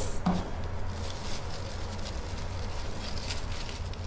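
Faint rustling and crinkling of plastic-bag strips being handled and laid out on a tabletop, over a steady low hum.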